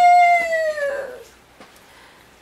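A woman's high voice singing one long held note that sinks slightly and fades out about a second and a half in, followed by quiet room sound with a few faint clicks.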